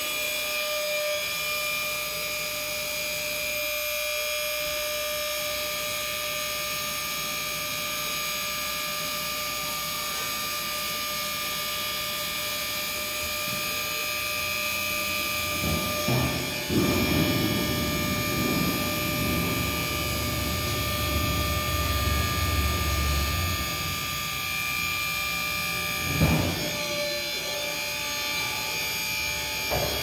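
Electric hydraulic pump of a Range Road RR608 ATV trailer running steadily with a whine while its ram tips the dump bed up. About halfway through, a lower, rougher rumble grows louder for several seconds, and there is a short knock near the end.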